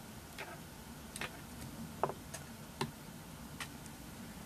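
Faint small clicks, about one every second, the loudest about two seconds in: fingers and tying thread working at the head of a small fly hook during a hand whip finish.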